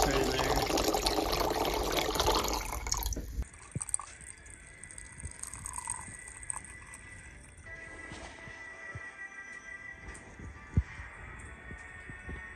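Near-freezing water pouring from a plastic water jug in a steady stream, stopping about three and a half seconds in. Faint background music and a few light clicks follow.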